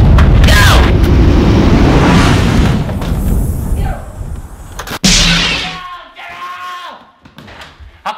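Explosion sound effect: a loud, deep boom that rumbles on for about three seconds and fades away, then a second blast about five seconds in that dies down within a second.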